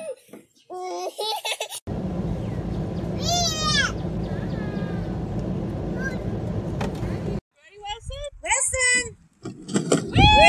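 Babies and toddlers babbling and squealing in short bursts. In the middle a steady low rushing noise runs for several seconds under one high, falling child's squeal, then stops abruptly.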